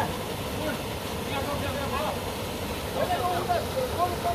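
Men's voices talking at a distance over a steady rushing background noise.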